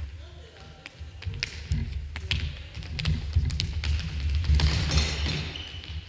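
A futsal ball being dribbled and struck on a wooden gym floor: a string of sharp taps and knocks from ball touches and footsteps, echoing in the hall, with a louder scuffle of play about three-quarters of the way in.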